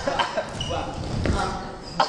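Dancers' sneakers thumping and squeaking on a studio floor, a few sharp stomps among them, with voices in the room.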